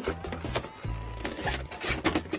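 Background music with the rubbing and rustling of a cardboard figure box and its plastic blister being handled and opened, with a few short clicks.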